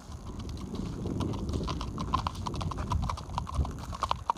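Icelandic horse's hooves clip-clopping on a gravel track in a quick, even run of beats, growing louder from about a second and a half in as the horse comes closer.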